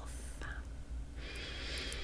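A woman's audible in-breath through the mouth, a soft breathy hiss that starts a little past halfway and swells, over a faint steady low hum.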